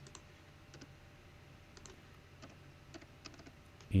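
Keystrokes on a computer keyboard: a string of irregular, scattered taps as short numbers are typed in.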